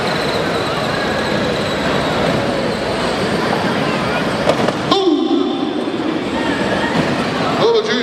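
Busy arena noise: crowd voices mixed with Power Wheels battery-powered ride-on toy cars running and bumping about on a dirt floor. The din drops sharply about five seconds in.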